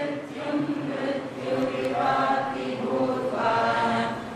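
A group of voices chanting a Sanskrit verse together, on steady held notes.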